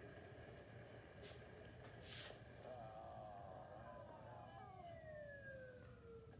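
Game-show 'Bankrupt' sound effect: one long falling tone in the last couple of seconds, faint and heard through a device's small speaker.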